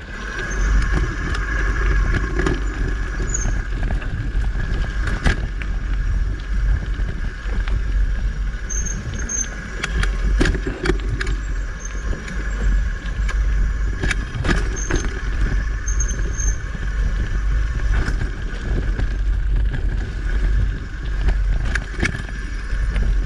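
Mountain bike being ridden along a dirt singletrack: a steady low rumble of tyres and wind on the camera microphone, with repeated sharp knocks and rattles as the bike goes over bumps and roots. The noise grows loud within the first second.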